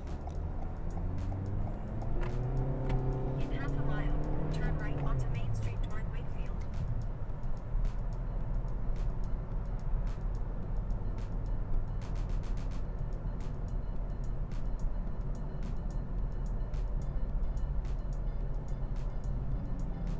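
Steady low rumble of a car's engine and tyres heard inside the cabin while driving on a highway. A voice is heard for a few seconds about two seconds in.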